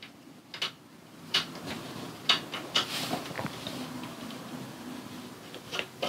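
Scattered light clicks and taps, about half a dozen spaced irregularly, as a black locking knob is threaded by hand into the hole in a metal table pole.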